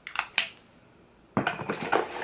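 Lipstick tubes and makeup packaging handled: a few light clicks and clinks about a quarter second in, then a busier run of clicks and rustling near the end.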